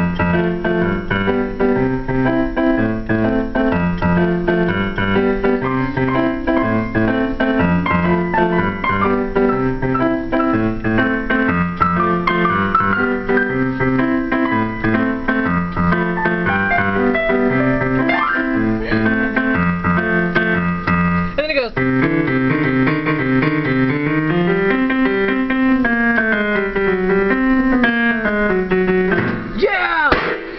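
Digital piano played four hands as a duet: a repeating low accompaniment pattern under a melody in the upper keys. About two-thirds of the way through the playing changes to rising and falling runs up and down the keyboard.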